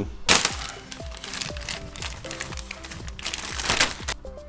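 Plastic packaging crinkling and rustling as a motorcycle front fender is unwrapped and handled, loudest just after the start and again near the end. Background music with a steady beat plays throughout.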